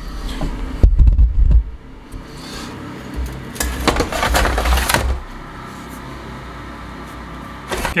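Stainless steel ash container being pushed back into the base of a Cinderella incinerating toilet: heavy knocks and handling bumps in the first two seconds, then a metallic scraping slide from about three and a half to five seconds, followed by a low steady hum.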